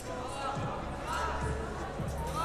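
Competition trampoline bed thudding under a gymnast's bounces, two dull low thumps about half a second and one and a half seconds in, over voices in a large hall.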